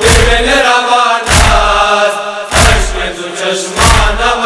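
Hazaragi noha lament chanted by a voice in long, drawn-out notes over a deep, regular thump about every second and a quarter.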